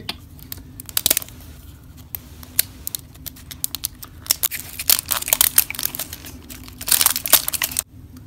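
Plastic wrapping being picked at and peeled off a plastic toy tube, crinkling and crackling in many small sharp clicks, busiest near the end.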